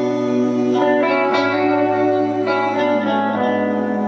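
Live band playing a slow ballad: sustained chords over a low bass note, shifting a few times.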